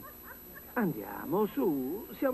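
A person's voice, its pitch swinging widely up and down in long glides, starting a little under a second in.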